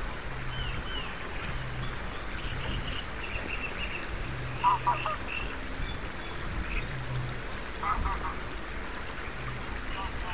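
Forest ambience from a fantasy soundscape: scattered high bird chirps over a steady bed of background noise. Short, loud animal calls break in about halfway and again near the end. A low tone pulses underneath, about once a second.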